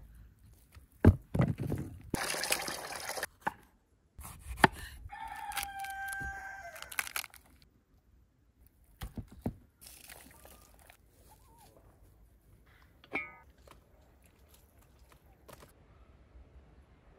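A rooster crows once, about five seconds in: one long held call that falls at its end. Before it come a few sharp knocks and a short rustling stretch, and a brief call sounds near thirteen seconds.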